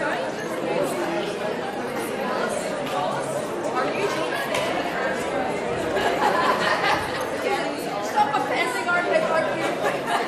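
Many people talking at once in a large room: a steady hubbub of overlapping conversation, with no single voice standing out.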